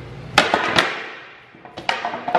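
Wooden balance board deck clattering down onto its roller and a concrete floor as the rider comes off it: two sharp knocks a little under half a second apart, then a few lighter clicks near the end.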